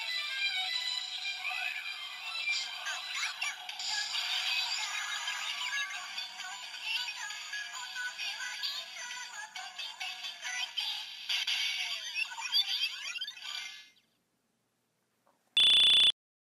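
Bandai DX Gamer Driver toy belt, with the Kamen Rider Chronicle Gashat inserted, playing its electronic music through its small speaker, thin and without bass. The music cuts off about two seconds before the end, and a short, loud, steady beep follows near the end.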